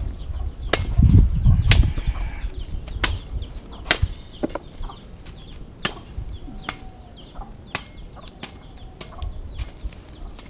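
Palm fruits being plucked by hand from cut oil-palm bunches: sharp snaps and clicks at irregular intervals, about one a second, as fruits break off and land, with a low rumble about a second in.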